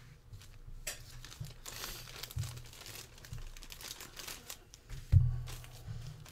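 Clear plastic bag crinkling and rustling in the hands as a wax pack of baseball cards is slid out of it, with a dull thump about five seconds in.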